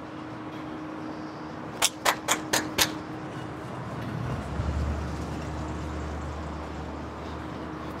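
City street traffic noise, with a quick run of five sharp clicks about two seconds in and a steady low vehicle engine rumble setting in about halfway through.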